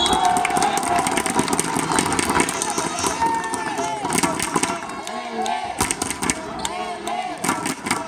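Basketball game in a gym: voices calling out over the sounds of play, with many short sharp knocks of the ball and footwork and, in the second half, short sneaker squeaks on the court.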